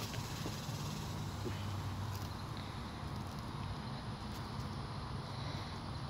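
Steady low background rumble with a faint hum that shifts a little in pitch, and a few faint clicks of handling among trash bags.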